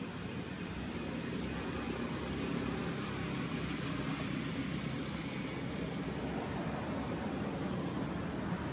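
Steady low background rumble with a faint hiss, unbroken and without any distinct event.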